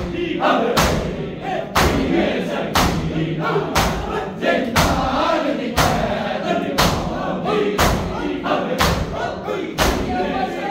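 Shia matam: a group of men striking their bare chests with their palms in unison, a loud slap about once a second. Between the strikes, men's voices chant the noha in a group.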